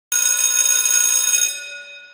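A bell-like chime of several steady ringing tones that starts suddenly, holds, and fades away over the last half second.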